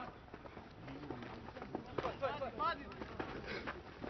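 Players shouting on a rugby league pitch during open play, several short shouts about two seconds in, over scattered thuds of running feet and contact.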